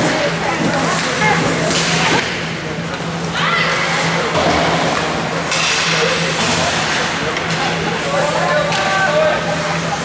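Ice hockey rink ambience: indistinct chatter from spectators in the stands, with skates scraping on the ice in short bursts and a steady low hum in the background.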